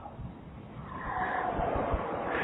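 Faint background noise in a pause between spoken phrases, a soft hiss that grows a little louder about a second in.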